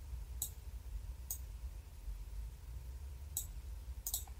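Three sharp computer mouse clicks, spaced one to two seconds apart, over a low steady hum.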